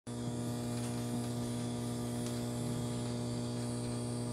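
Steady electrical mains hum from a plugged-in electric bass guitar rig, the amplified instrument buzzing while no notes are played.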